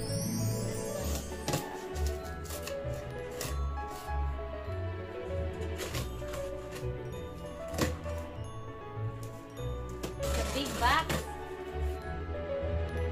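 Background music over packing tape being pulled off a cardboard shipping box and the flaps opened: sharp rips and cardboard knocks throughout, with a longer tape-peeling sound about ten seconds in.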